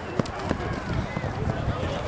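Soccer match in play: players shouting across the field, with a few sharp knocks of the ball being kicked, the loudest just after the start.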